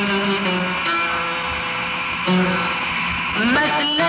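Male singer's voice singing a Gulf Arabic song over instrumental accompaniment, holding long, slightly wavering notes.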